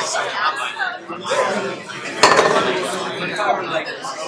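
Crowd chatter: several people talking at once in overlapping conversations, with a single sharp knock a little over two seconds in.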